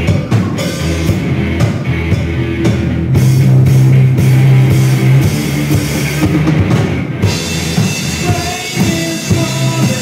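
Live rock band playing: electric guitar, bass guitar and drum kit. Sharp drum strikes stand out until about seven seconds in, when the high end fills with a steady wash.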